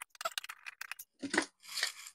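A rapid string of small clicks and scrapes from a screwdriver working a screw in a hard plastic cover, followed by two louder clatters as the loosened plastic bottom cover is handled and lifted off.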